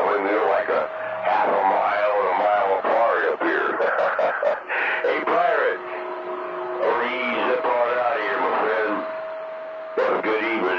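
Voices coming over a CB radio receiver on channel 19. From about halfway through, a steady whistle tone runs under them.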